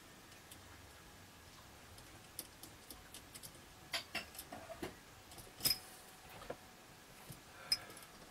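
Faint, scattered clicks and taps of an electrical outlet and its stiff wiring being handled and pressed into a metal outlet box, the sharpest clicks in the middle and just before the end.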